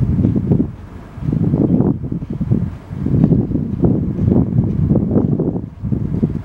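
Wind buffeting the microphone in uneven gusts, starting suddenly and swelling and dropping every second or so.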